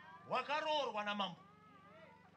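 A person's voice through a public-address system, making one wordless drawn-out sound of about a second whose pitch rises and falls, over a steady low electrical hum.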